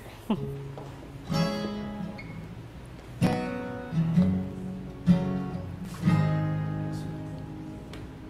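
Acoustic guitar strummed in a slow song intro: about six single chords, each struck and left to ring out and fade before the next.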